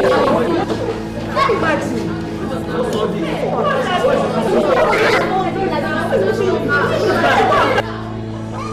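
Several voices talking and shouting over one another in a heated argument, over steady background music. The voices stop abruptly just before the end, leaving only the music.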